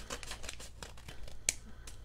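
Scissors cutting open a paper mailer envelope, with paper crinkling and one sharp snip about a second and a half in.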